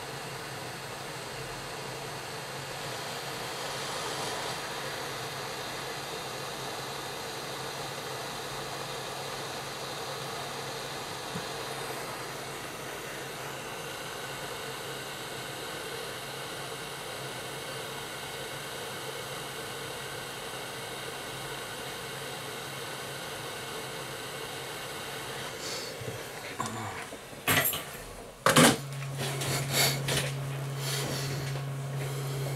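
Steady whir of a fan with a low hum on the repair bench. Near the end come a few sharp clicks and knocks of tools handled on the bench, followed by a louder low hum.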